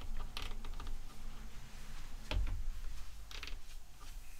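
Buttons and knobs on a QCon Pro X DAW control surface being pressed and turned: a few scattered clicks, one with a low thump a little after two seconds in.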